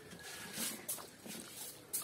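Close-miked eating sounds: fingers mixing rice and pork curry on a plate, with a few short wet smacks from chewing.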